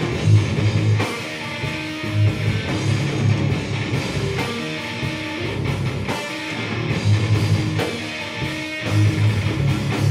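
Metal band playing live on distorted electric guitars, electric bass and a drum kit. The riff is heavy and chugging, its low end pounding in repeated bursts under sharp drum hits.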